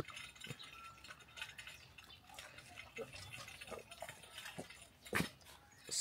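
Dogs eating from metal bowls: faint, scattered clicks and smacks of chewing and licking, with one sharper click about five seconds in.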